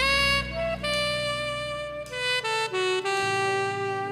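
Smooth jazz saxophone melody over a sustained low backing. The sax enters with a note scooped up into pitch, holds a slow line of long notes, then steps down about two and a half seconds in and settles on a long lower note.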